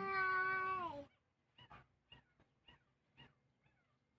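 A long drawn-out cry, held about two seconds and ending about a second in, followed by a few faint clicks.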